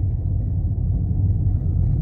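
Steady low rumble of a car driving slowly, its engine and road noise heard from inside the cabin.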